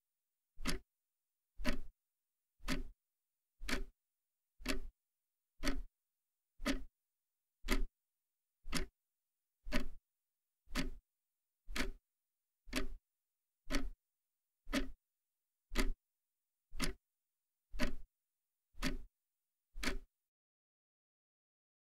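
A clock ticking once a second, each short tick cut off into dead silence before the next.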